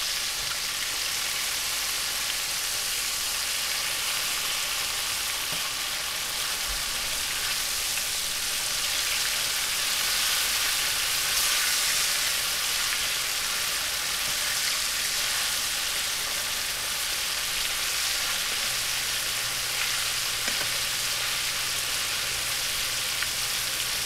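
Battered slices of elk heart shallow-frying in about a quarter inch of oil over high heat in a skillet: a steady sizzle.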